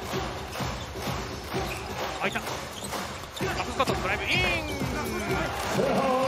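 Basketball dribbled on a wooden arena court: a run of repeated bounces, heard over arena noise with music and voices.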